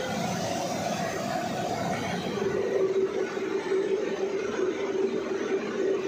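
Industrial rotary salt dryer running: a steady machine hum with a held tone that grows stronger about two seconds in.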